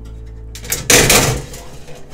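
Metal range hood grease filter rattling and scraping as its panels are pulled apart by hand, loudest about a second in.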